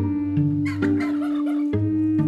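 A turkey gobble, about a second long and starting just over half a second in, over background music with a held tone and notes struck about twice a second.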